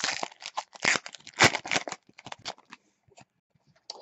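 A baseball card pack's wrapper being torn open and crinkled by hand: a quick run of rips and crackles over the first two seconds or so, thinning to a few soft rustles.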